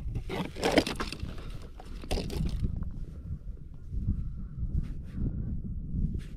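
Wind buffeting the microphone, with two bursts of crunching and rustling in the first three seconds as a winter tip-up and its line are handled at an ice hole and a hooked pike is pulled up by hand.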